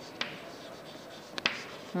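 Chalk writing on a chalkboard: faint scratching, with a few sharp taps as the chalk strikes the board.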